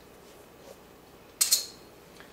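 Tools and a tap shoe being handled at a counter: quiet handling noise, then a single short, sharp scrape about a second and a half in.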